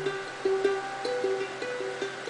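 Ukulele playing a short melodic run of single plucked notes.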